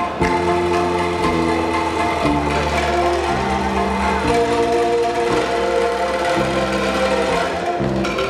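Angklung ensemble playing a tune, the shaken bamboo tubes sounding steady, rattling sustained notes over a bass line that moves to a new note about every second.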